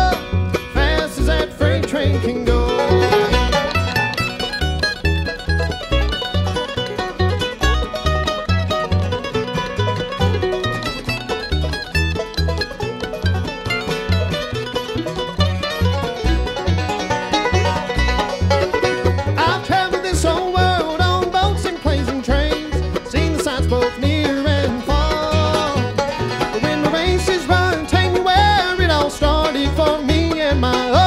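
Bluegrass band playing an instrumental break with no singing. Five-string banjo, mandolin and acoustic guitar pick the melody and rhythm over an upright bass plucking a steady, even bass line.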